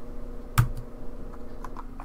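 Computer keyboard keystrokes: one firm key press about half a second in, then a few lighter clicks, over a faint steady hum.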